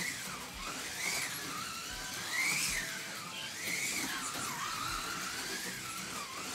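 A 1:32 Revoslot Marcos LM600 slot car's small electric motor whining as it laps a plastic track, its pitch rising and falling about once a second, over a faint hiss of tyres and guide in the slot. The car is running fresh out of the box and holding the slot well.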